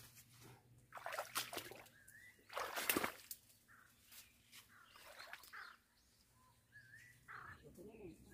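Leaves and branches of a goumi (silverberry) shrub rustling as berries are picked by hand, with two louder bursts of rustling in the first half, the second one the loudest. A bird chirps briefly a few times.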